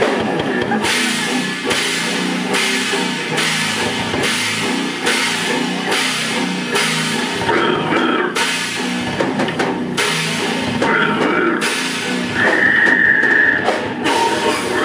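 Death metal band playing live: heavily distorted, down-tuned guitars and bass riffing over a pounding drum kit, kicking in sharply at the start. A high held squeal sounds for about a second and a half near the end.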